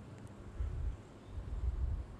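Quiet outdoor background with two low rumbles of wind buffeting the microphone, about half a second and a second and a half in.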